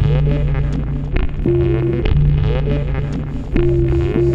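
Electronic music made on an Elektron Digitakt: a held low bass drone with sustained synth tones and regularly repeating percussive hits.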